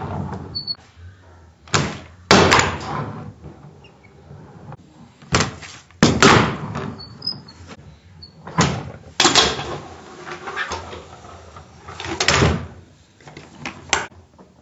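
A Hangnail handboard being popped and landed on a wooden table: a series of sharp clacks, several in close pairs, each followed by the rumble of its wheels rolling across the wood.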